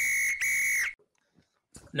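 A whistle blown twice, two short steady blasts at the same high pitch, one straight after the other, ending about a second in: a referee-style whistle stinger for the show's transition card.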